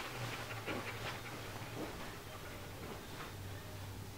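Rottweiler panting softly over a steady low hum.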